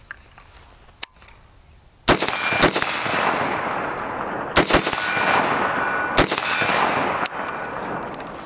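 BCM 11.5-inch AR-15 short-barreled rifle fired unsuppressed through a Surefire WarComp muzzle device. About five loud single shots, a second or two apart, start about two seconds in, each followed by a long rolling echo.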